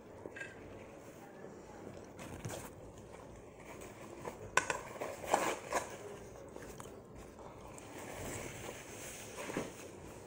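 Quiet sounds of two people eating at a table: chewing and small clicks, with a short cluster of louder clicks and rustles about halfway through.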